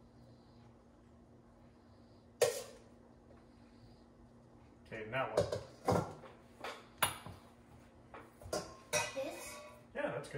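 A serving spoon clinking and scraping against a glass baking dish and bowls as meat sauce is spooned onto a lasagna layer. There is one sharp knock about two and a half seconds in, then a quick run of clinks and scrapes from about halfway through.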